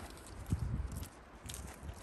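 Footsteps on soft dirt scattered with bark and wood chips: a few dull, low thuds about half a second in and again near the end.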